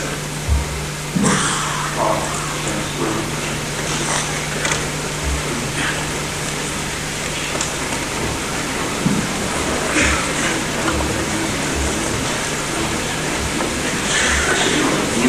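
A pause in a public-address recording on old videotape: a steady hiss and a low electrical hum, with scattered soft knocks and rustles.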